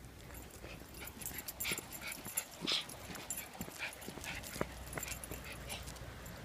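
Small Maltese dogs on leashes giving several short, high whimpers, the loudest about halfway through, among light clicks and jingles.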